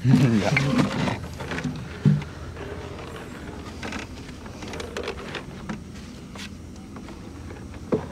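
A fishing net and its rope hauled by hand over the side of a wooden boat, with small scraping and dripping noises and a single knock against the boat about two seconds in. A brief voice-like sound comes first.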